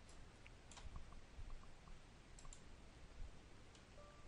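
Near silence with a few faint computer mouse clicks as a contact is picked from a drop-down list.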